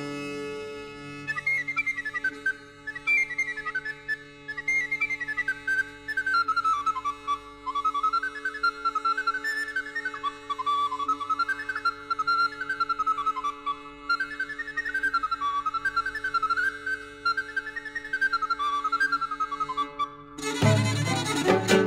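Medieval-style instrumental music: a high flute-family wind instrument plays a fast, ornamented melody that winds up and down over a steady low drone. The melody enters about a second in.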